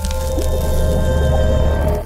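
Logo-intro music and sound effect: a loud, steady deep bass swell with several held tones and a hissing splash-like wash on top, beginning to die away right at the end.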